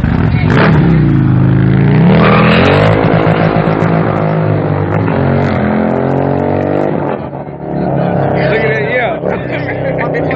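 Harley-Davidson bagger's V-twin launching hard, revving up steeply in the first two seconds and then pulling away through the gears, its pitch stepping with each shift.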